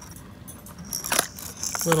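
A clear plastic lure box handled in gloved hands, with light plastic rustling and a sharp click about a second in, then a smaller click near the end.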